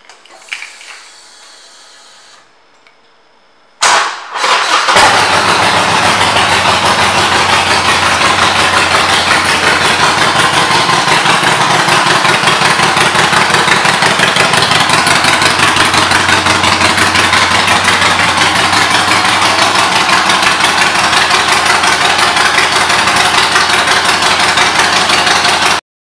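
2013 Harley-Davidson Forty-Eight's air-cooled V-twin, fitted with aftermarket pipes, starting about four seconds in after a brief crank, then idling steadily with a fast, even pulse.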